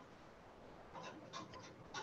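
Near silence: faint steady hiss on the call audio, with a few soft, brief sounds from about a second in.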